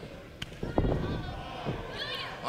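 Impacts in a wrestling ring: a sharp smack of a strike landing about half a second in, then a heavier thud just before the one-second mark, and a smaller knock later.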